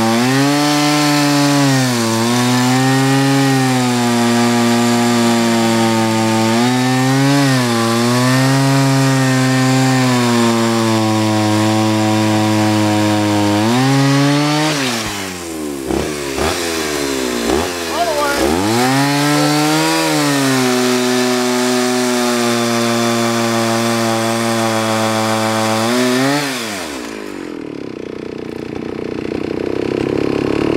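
Two-stroke chainsaw at full throttle bucking a hickory log, cutting hard with a chain that is not sharp, its engine note sagging and recovering under the load. About halfway the throttle drops off and is blipped twice, then the saw cuts steadily again. It falls back to a low idle a few seconds before the end.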